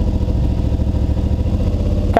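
Suzuki V-Strom 650's V-twin engine idling with a steady low rumble and an even rapid pulse.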